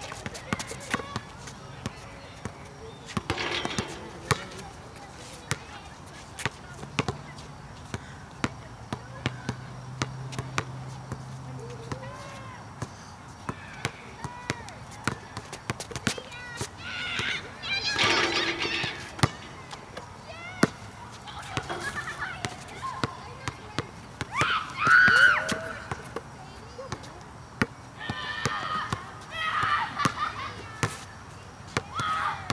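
A basketball bouncing on an outdoor hard court: repeated, irregularly spaced bounces of dribbling and loose balls, with voices in the background.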